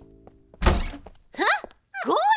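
Cartoon sound effects: a loud, sudden thunk a little over half a second in, then a short squeal that rises and falls in pitch.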